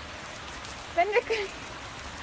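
Steady rain falling on wet pavement, with a short high-pitched voice, bending up and down, about a second in.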